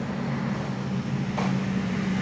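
A steady low mechanical hum made of a few even low tones, with a faint short sound about one and a half seconds in.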